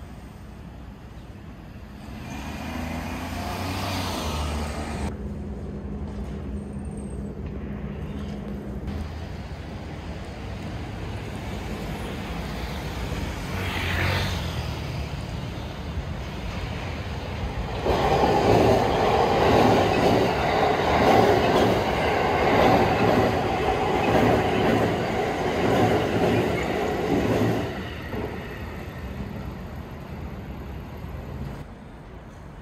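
Electric passenger train running past on the Umeda freight line. It comes in loud about two-thirds of the way through with a rhythmic clatter of wheels on the rails for about ten seconds, then fades.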